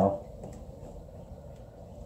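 The tail of a spoken word, then low room background with a faint steady hum. No distinct tool or handling sound stands out.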